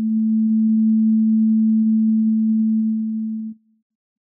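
A single steady electronic sine tone at about 220 Hz (the note A) from the Railbow's Max/MSP synthesizer, held for about three and a half seconds, then cut off. Faint rapid ticks run under it.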